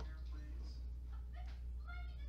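Steady low hum with a few faint, short pitched calls over it that rise and fall in pitch.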